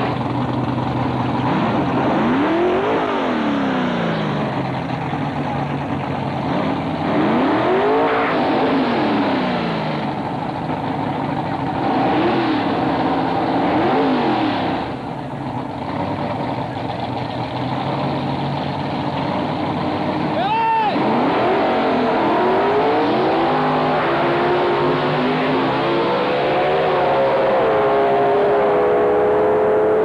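Drag-race car engines revved repeatedly at the starting line, the pitch sweeping up and down several times, with one sharp quick blip about two-thirds of the way through. Near the end a steadier engine note climbs slowly, as a car pulls away and accelerates.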